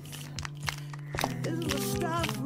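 A song starting: a low held note with a few sharp clicks, then a voice begins singing held notes about halfway through.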